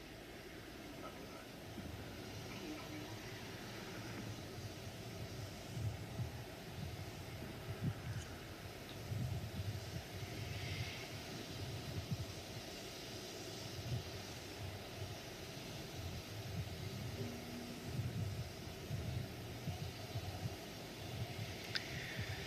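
Outdoor field audio from the landing site: a steady hiss under a low, uneven rumble that swells and fades every second or so.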